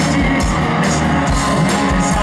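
Live rock band playing loud: electric guitars and bass over a steady drumbeat, about two kick-drum hits a second, with cymbals.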